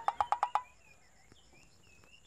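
A quick rattle of about eight short pulses in the first half-second, then faint small-bird chirps in the background.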